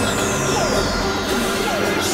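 Experimental synthesizer noise music: dense low drones under a high whistle that glides steadily downward, with short falling blips repeating nearly twice a second.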